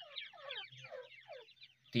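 Grey francolin (teetar) chicks peeping: a quick run of thin, high, downward-sliding peeps, several a second, fading out about a second and a half in.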